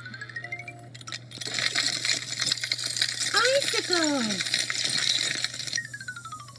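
Children's video soundtrack: a stepped upward harp-like glissando at the start, then a bright jangling, clinking clatter lasting several seconds with a couple of falling glides in the middle, and a stepped downward glissando near the end.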